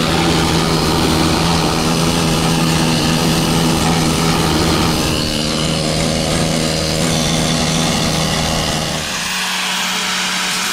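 A handheld power tool running steadily with a low droning hum as it trims a car's sheet-metal body structure. About nine seconds in the sound changes as an angle grinder with a cutting disc takes over.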